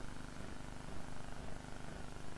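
Steady low hum and room noise, with a faint constant tone.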